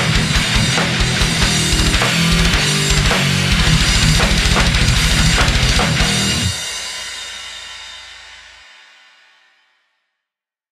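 Death metal band playing: distorted guitars, bass and drums with a dense run of fast bass-drum strokes, then the song stops abruptly about six and a half seconds in. The last chord and cymbals ring out and die away over the next three seconds.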